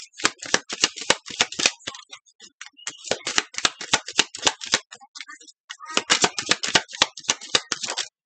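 A deck of tarot cards being shuffled overhand by hand: rapid runs of light card clicks and slaps, coming in three spells with short pauses between.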